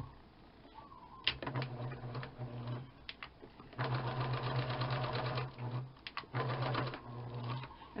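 Electric sewing machine stitching a bag strap in several short runs of one to two seconds, stopping and starting with brief pauses between, as the strap is sewn on and backstitched.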